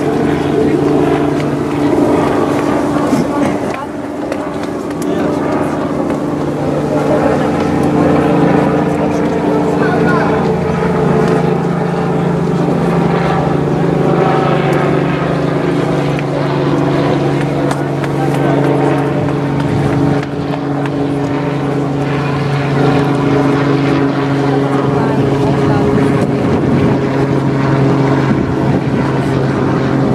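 A steady motor drone that shifts slightly in pitch a couple of times, with people's voices over it.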